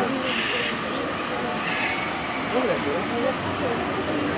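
Steady background noise, like outdoor ambience or a fan, with faint distant voices.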